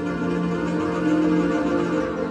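Roland E-09 arranger keyboard playing slow, held chords on a sustained strings voice, over a steady low note.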